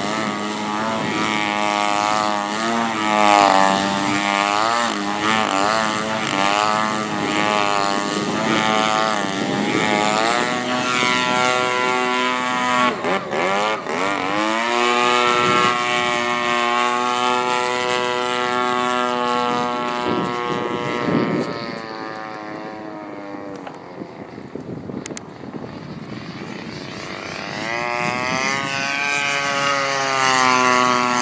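DA-35 single-cylinder two-stroke gasoline engine and propeller of a large radio-controlled Yak 54 aerobatic plane, the pitch rising and falling with throttle through the manoeuvres. About thirteen seconds in the note drops away sharply and climbs again; it is quieter for a stretch about two-thirds through, then swells back near the end.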